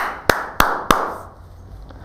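Four quick hand claps about a third of a second apart, the first the loudest, urging hurry.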